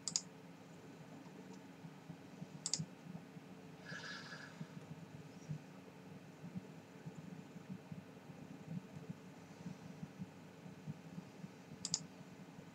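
Quiet room tone with three sharp clicks and one short exhale of breath about four seconds in.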